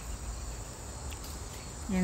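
Insects trilling steadily in one constant high-pitched note, over a low rumble. A voice starts at the very end.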